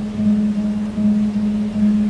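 Acoustic guitar played unaccompanied, a low note ringing steadily with a gentle pulse.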